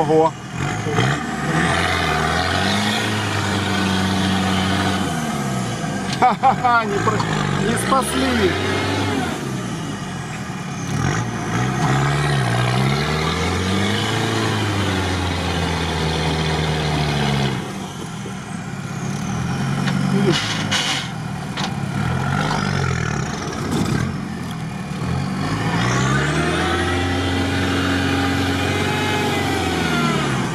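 Off-road vehicle engine heard from inside the cab, revving up and down repeatedly as it drives through deep swamp mud, with a few sharp knocks from the body. Mud is flying near the end: the vehicle is bogging down in the mud.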